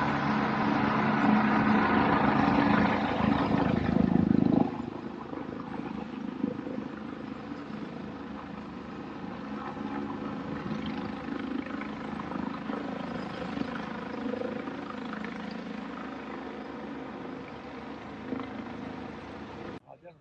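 Helicopter flying overhead: its rotor and engine are loud for about the first four and a half seconds, then drop suddenly to a quieter, steady sound.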